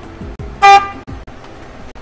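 A car horn gives one short, loud toot about half a second in, over background music with a deep, repeating beat.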